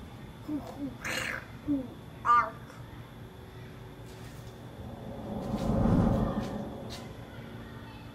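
A child's short creature-like grunts and calls, voicing a Bigfoot, the loudest a rising call a little past two seconds in. A low rumbling swell then builds to a peak about six seconds in and fades.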